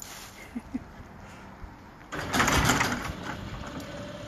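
Locking up: a rattling clatter about two seconds in, lasting about a second, after a couple of small ticks, then settling to a faint steady hum.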